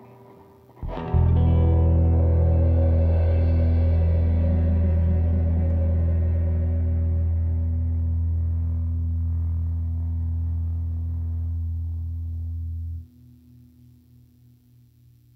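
Final chord of a small acoustic ensemble, with guitar, electric bass and bowed cello, struck together about a second in and held, slowly fading. Near the end the low bass note cuts off and a single remaining tone dies away.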